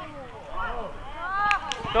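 Shouting voices of players and coaches on a youth football pitch, quieter than the yelling just before and after, with two sharp knocks about a second and a half in.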